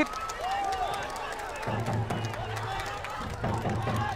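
Faint ambience of an outdoor football pitch just after a goal: scattered distant shouts and some clapping from players and spectators. A low steady hum comes in just under two seconds in.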